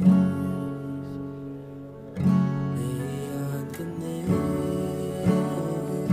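Acoustic guitar with a capo, strummed chords: a chord struck and left to ring for about two seconds, a second one likewise, then quicker strums near the end.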